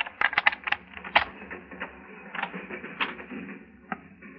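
Radio-drama sound effect of a skeleton key worked in a locked door: a quick run of sharp metallic clicks and rattles in the first second or so, then a few scattered clicks.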